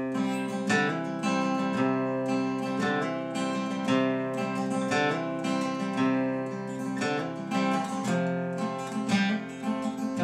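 Acoustic guitar playing the instrumental intro of a folk song: chords picked and strummed in a steady rhythm, with no singing.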